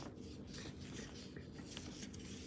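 Faint handling noise: soft rubbing and a few light clicks over a low steady room hum.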